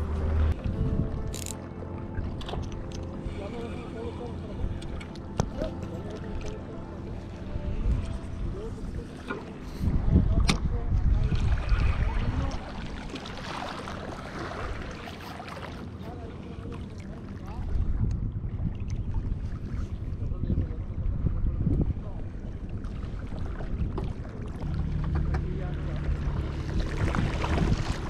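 A distant motorboat engine humming steadily, with gusts of wind rumbling on the microphone about a third of the way in and again later.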